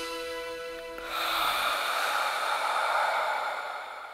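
The track's last held synth chord dying away. About a second in, a long breathy exhale comes in and fades out at the end.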